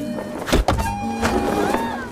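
Background music with two quick, heavy thuds about half a second in, as a man leaps up onto a tree trunk.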